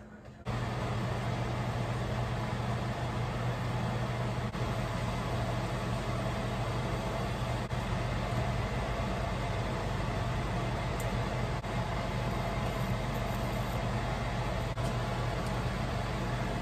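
Steady whirring noise with a low hum underneath, switching on abruptly about half a second in and holding level without change.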